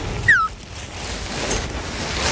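A short falling whistle-like tone near the start, then a steady, noisy rustling as a nylon tent bag is gathered up and handled in a metal cart.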